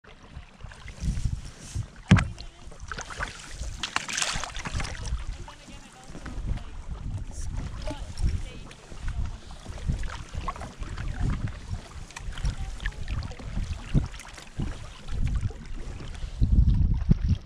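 Canoe paddle strokes and river water splashing against the hull, with wind buffeting the microphone in uneven gusts. A sharper knock or splash stands out about two seconds in.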